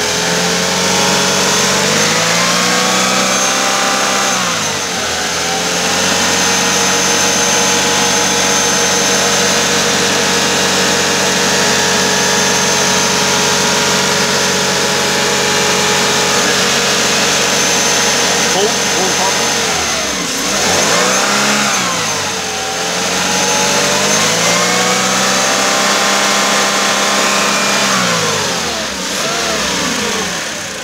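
Toyota Hiace 2.7-litre four-cylinder petrol engine running, revved up and held at a steady raised speed for long stretches. It drops back and rises again about two-thirds of the way through, and falls off near the end.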